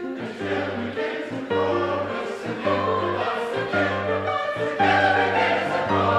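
Mixed choir of men and women singing in parts, with held notes over a low note that repeats about once a second, growing louder near the end.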